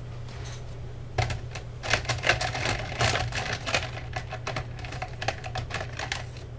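Pens clicking and rattling against one another as a hand rummages in a jar of pens: a quick, dense run of clicks for a few seconds that thins out to a few scattered clicks near the end. A steady low hum runs underneath.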